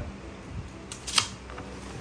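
A tape measure's blade retracting into its case: a short rasp ending in a sharp snap just over a second in.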